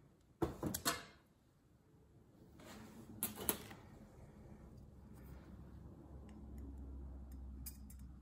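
Aluminium pouring pitcher clattering against a stainless steel worktable as it is set down, in two short clusters of knocks about half a second in and around three seconds. Then soft handling with a few light clicks near the end, with a low hum underneath.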